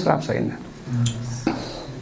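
A man's voice in short fragments and a brief hum during a pause in speech, with a single light click about one and a half seconds in.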